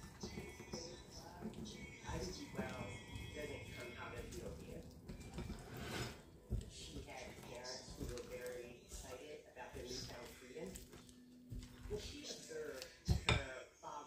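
Spatula stirring and folding thick cake batter with chopped rhubarb in a glass mixing bowl, with a few short knocks against the glass, under faint background voices.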